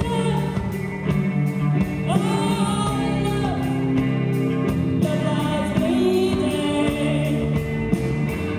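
Live rock band playing, with drums, bass and electric guitar under long held melodic notes; a woman's voice sings over the band at the start.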